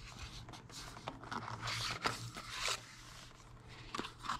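Cardboard packaging rustling and scraping as a narrow white cardboard insert box is slid out of a gift box: a run of irregular scrapes, busiest in the middle.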